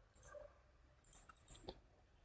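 Near silence with a few faint computer mouse clicks, the sharpest near the end, as a right-click opens a paste menu.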